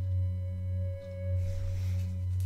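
Ambient background music in a singing-bowl style: one steady ringing tone held over a low drone that swells and dips gently.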